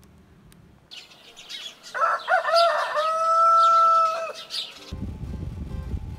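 A rooster crowing once, a long cock-a-doodle-doo that rises and ends in a held note, with small birds chirping around it.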